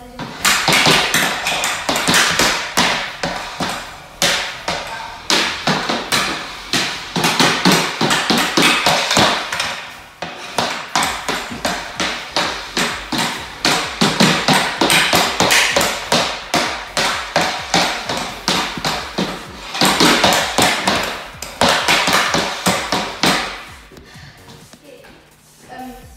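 Hockey stick blade rapidly clacking a green practice puck back and forth on a hardwood floor during stickhandling, several strikes a second. There is a short break about ten seconds in, and the strikes stop a couple of seconds before the end.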